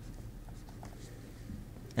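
Faint scratching and light taps of a stylus writing on a tablet screen.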